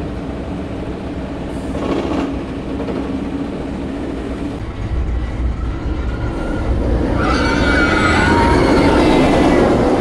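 Inverted roller coaster train running on its steel track: a steady rumble that grows louder over the last few seconds, joined by a high ringing squeal from the wheels.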